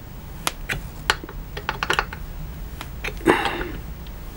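Sharp, irregular clicks and cracks from a wrist joint cracking as it turns a large screw by hand with a pocket-tool driver bit. A brief, louder rush of sound comes a little over three seconds in.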